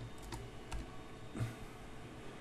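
Faint computer keyboard keystrokes: a quick run of light clicks at the start, then two softer taps, as a G-code command is typed into the printer-control software.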